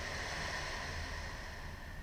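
A long, soft exhale, a breathy rush of air that fades away toward the end, over a faint steady low hum.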